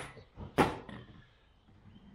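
Items being handled and set down: a short click at the start, then a sharp knock about half a second in that is the loudest sound, with low room noise after it.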